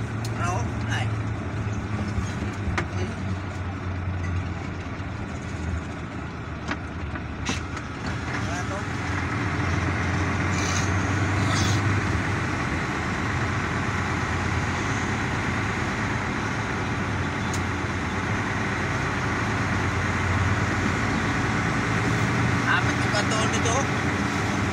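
Engine and road noise heard from inside a moving vehicle: a steady low hum that grows louder about eight seconds in.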